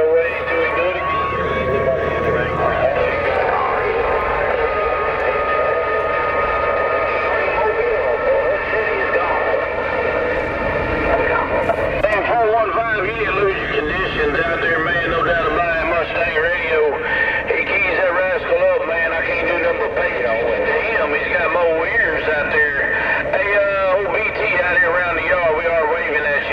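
Garbled voices of other CB operators coming through a CB radio's Uniden external speaker, thin and band-limited, with a steady whistle under them during the first several seconds.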